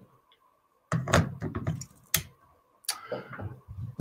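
Clicks and knocks of a Canon camera body being handled and mounted onto the rear of a Novoflex macro bellows, with a sharp click about two seconds in.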